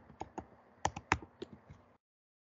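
Typing on a computer keyboard: about seven uneven keystrokes, after which the sound cuts off abruptly.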